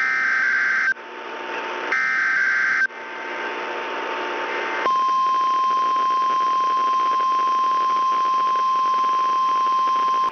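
NOAA Weather Radio EAS alert received over FM: two roughly one-second bursts of warbling SAME header data tones about a second apart, with receiver hiss between them. About five seconds in, the steady 1050 Hz weather radio warning alarm tone starts and holds to the end.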